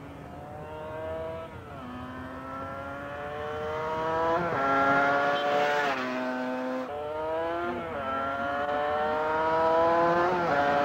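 Motorcycle engine accelerating hard through the gears, its pitch climbing and dropping back at each upshift, several times over; it grows louder as the bike comes closer.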